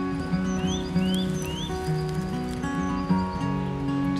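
Steel-string acoustic guitar playing a slow intro of ringing, sustained notes. A bird calls three quick rising chirps over it in the first second and a half, with other birds chirping faintly.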